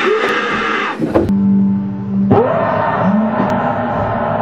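Startled, shrill screaming: one long scream that breaks off about a second in, then a second from a little past two seconds, each rising and falling in pitch.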